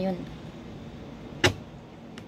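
A single sharp click of metal cutlery against the food container, about one and a half seconds in.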